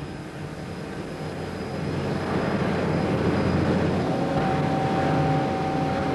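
Automated car-park lift machinery carrying a car on its platform up the shaft: a steady mechanical rumble that grows louder over the first few seconds, with a steady whine joining about four seconds in.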